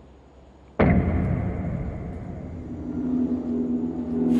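A sudden deep boom, a dramatic music stinger, hits about a second in. It rings on into a low, tense music drone with steady held tones.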